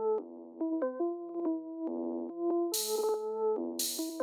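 Trap beat intro: a synthesizer melody of short keyboard-like notes in a repeating pattern, with no drums yet. Two short bursts of hiss come in near the end.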